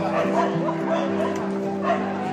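Live band music: an electric guitar holds sustained notes that step from one pitch to another, with a voice over it and no clear drum hits.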